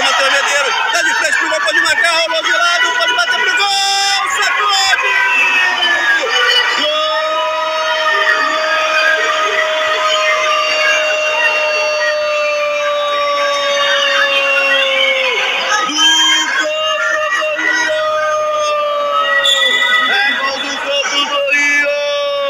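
Spectators' voices and shouts in a sports hall, with a long steady pitched note held for about eight seconds from about seven seconds in, and a second, shorter one later on.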